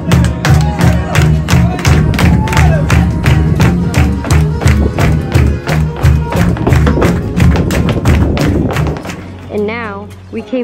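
Live flamenco music: a singing voice over a heavy beat, with a dancer's rapid, sharp footwork taps. The music stops about a second before the end.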